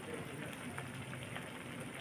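Squid adobo simmering in a wok: the sauce bubbling and crackling steadily, with faint light ticks.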